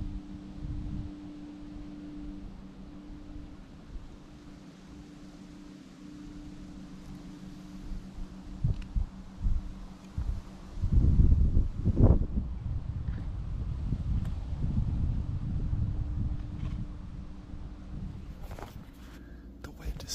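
Gusty wind buffeting the camera microphone as a low rumble, with a strong gust about halfway through and the wind staying stronger afterwards, swirling around.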